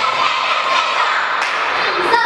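A group of children shouting and cheering together, a continuous mass of overlapping voices.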